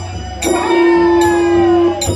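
Bodo Kherai ritual music. Ringing metal cymbal strikes keep a steady beat about three-quarters of a second apart, over a low drum. A long held note starts about half a second in and stops just before the end.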